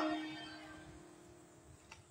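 The tail of a man's loud exclamation through a microphone fading away in the room's reverberation, then quiet room tone with a faint steady hum.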